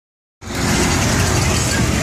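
Road traffic: a vehicle passing close by on the street, loud engine and tyre noise that cuts in abruptly about half a second in.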